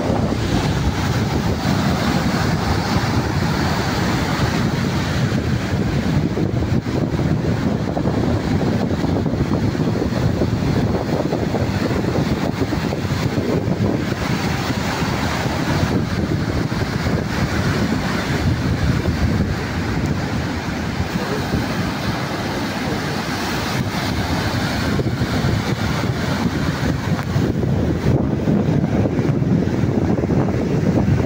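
Surf breaking and washing up a beach in a steady, unbroken rush, with wind buffeting the microphone underneath.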